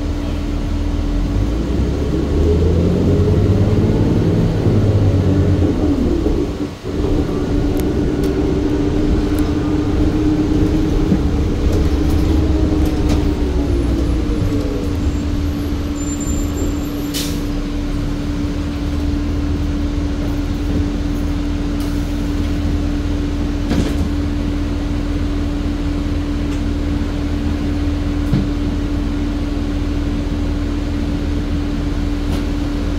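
Cabin sound of a New Flyer C40LFR natural-gas city bus under way: the engine runs up in pitch as the bus gathers speed, with whines gliding up and down through about the first half, over a steady hum. There is a brief dip in the sound about seven seconds in and a short sharp noise about seventeen seconds in.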